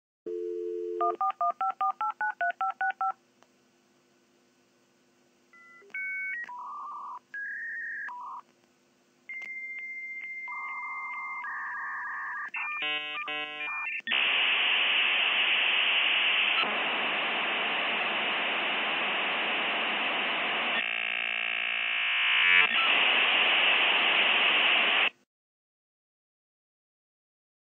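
A 56k dial-up modem connecting: a dial tone, about ten quick touch-tone digits dialed, a pause, then answer tones and a steady high whistle, a burst of warbling chirps, and about eleven seconds of loud hissing static as the modems negotiate the connection, cutting off suddenly near the end.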